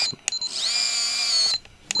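Electric winch on a 1/10 RC rock crawler reeling in its line under load: a high motor whine that climbs in pitch and then holds for about a second before stopping. A sharp click comes just before it and another near the end.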